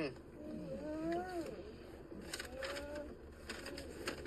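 A dog whining for food, two drawn-out whimpering calls that rise and fall in pitch, the first about a second long, the second shorter near the end.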